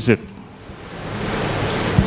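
Steady hiss with a low, even hum from the hall's microphone and sound system, growing louder through the pause. A man's spoken word ends just at the start.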